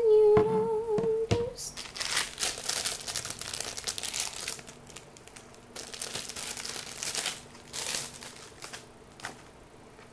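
Plastic packaging crinkling as a phone case is unwrapped and handled, in two bouts with a short lull between, followed by a couple of light clicks. It opens with a brief wavering hum.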